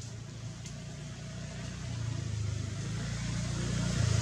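A low engine hum, growing louder over the last two seconds, with a short faint click about two-thirds of a second in.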